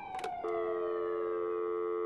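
A siren sounding, its pitch falling steadily. After a brief click about half a second in, a steady two-pitch telephone tone joins it and holds.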